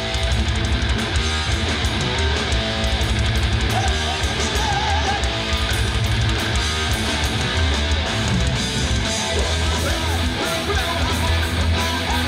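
Heavy metal band playing loud and live: distorted electric guitars, bass guitar and drums.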